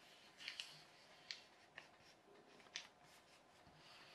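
A sheet of paper being folded and creased by hand: about five faint, short crinkles in the first three seconds.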